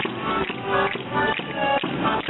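Folk music: a sustained melody over a steady drum beat of about two strikes a second.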